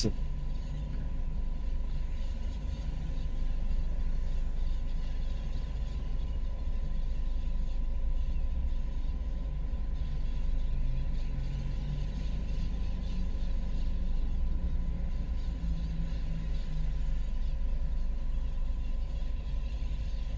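Steady low rumble of a car's engine and tyres, heard from inside the cabin while driving through city streets.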